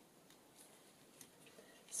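Near silence with a few faint, short rustles and ticks of paper being handled and pressed into a journal pocket by hand.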